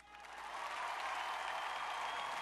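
Audience applauding at the end of a ballroom show dance, swelling up over the first half second and then holding steady.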